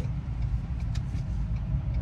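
Tow truck's engine running, heard from inside the cab as a steady low rumble.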